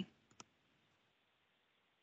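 Near silence broken by one short click about half a second in: a computer click advancing the presentation slide.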